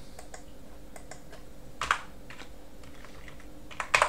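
Typing and clicking on a computer keyboard and mouse: scattered light key clicks, with a louder clatter about two seconds in and another near the end.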